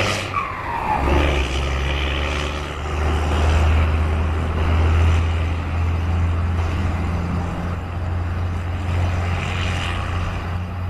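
Heavy truck's diesel engine running with a deep, steady drone as the truck moves off. In the first second a tone falls in pitch and the drone drops out briefly, then it comes back.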